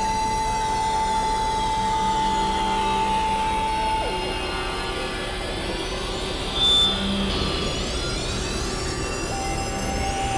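Experimental synthesizer drone music: a dense, noisy texture under a held tone that drops sharply in pitch about four seconds in and jumps back up near the end. Many high tones slide downward and then rise again, and a brief, louder high beep sounds about seven seconds in.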